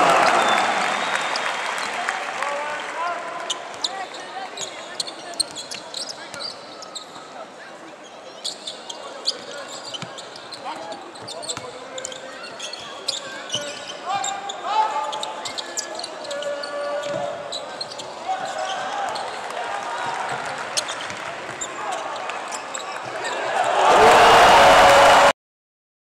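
Live basketball game in an arena: a ball bouncing on the hardwood court amid sharp knocks, with players' and spectators' voices. The crowd noise fades over the first few seconds and swells again at the very end.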